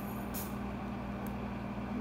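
Steady low hum of an overhead projector's cooling fan, with a short hiss about half a second in.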